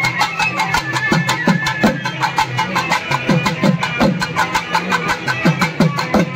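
Folk street band playing: a barrel drum beaten in a quick rhythm, its low strokes dropping in pitch after each hit, with a fast run of sharp clicking strokes, under a held melody on a long wind pipe.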